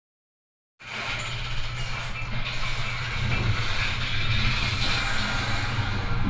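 High-speed elevator cab running: a steady low hum with an even rushing noise, starting about a second in.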